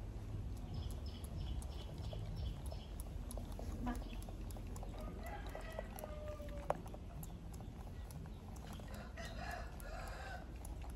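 A macaque's fingers pick and rustle through a man's hair, with faint crackling clicks throughout. Birds call in the background: a run of short high chirps about a second in, then longer pitched calls around the middle and again near the end.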